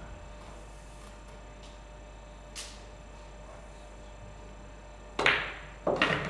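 A single sharp click of a pool shot about five seconds in: the cue tip striking the cue ball, with a brief ring-off, over a faint steady room hum.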